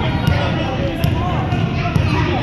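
Indoor youth basketball game: a basketball bouncing a few times on a hardwood gym floor and children's running feet, under steady crowd chatter echoing in the gym.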